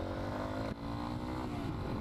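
Yamaha XT250's single-cylinder four-stroke engine pulling under acceleration: its pitch climbs, drops briefly at a gear shift about three-quarters of a second in, then climbs again and eases off near the end.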